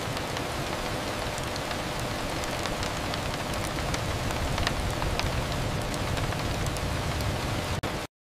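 Steady rain falling, with scattered individual drop ticks: the AI-generated Veo 3 soundtrack of a rainy-window bedroom clip.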